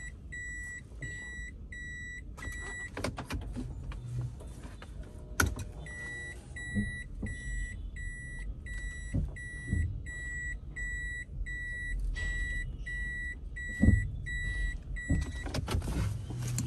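Toyota Harrier's in-cabin parking/reverse warning beeper sounding a steady train of short, high electronic beeps, about two and a half a second, the sign that the car is in reverse with the rear camera view on. The beeping stops for about three seconds a few seconds in, then resumes until just before the end, with a few soft knocks of handling beneath.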